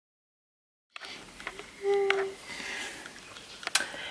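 Dead silence for about a second at an edit, then quiet room sound with a few clicks from the camera being handled, and a short steady tone lasting about half a second a second later.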